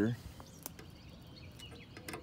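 A spoken word ends at the start, then quiet outdoor background with a single faint click about two-thirds of a second in as a roller chain of a sawmill feed drive is handled.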